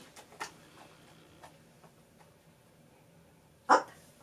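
Cavalier King Charles Spaniel giving a single short, sharp bark near the end, after a few faint clicks.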